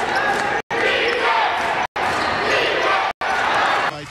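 Indoor basketball game sound: a ball dribbling on the hardwood court under voices and gym chatter. The sound cuts out to silence for an instant about every second and a quarter.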